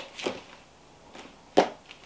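A small cardboard shipping box being handled in the hands: a soft knock about a quarter-second in and a sharper knock about a second and a half in.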